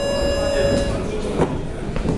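Electronic timer buzzer giving one steady, flat tone that cuts off sharply about a second in, signalling the end of a boxing round. A single sharp knock follows shortly after.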